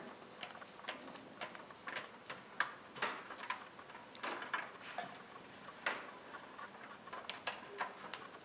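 Irregular light clicks and rustles as the cable and small plastic connector of an LED strip are handled and pushed through the inside of a computer case.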